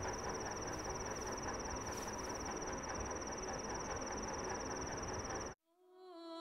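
A continuous high-pitched insect trill over a steady background hiss, both cutting off abruptly near the end.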